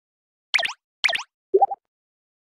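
Three short cartoon pop sound effects about half a second apart: two quick high ones that sweep in pitch, then a lower one that steps upward in pitch.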